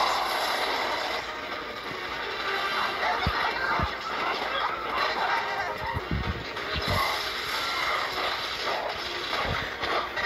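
Action-film soundtrack played through a screen's speaker: a dramatic music score mixed with battle sound effects, with several low thumps of impacts.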